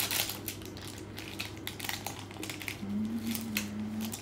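A knife cutting through the crispy top crust of a freshly baked honey-cake sheet: a run of small, irregular crunching crackles.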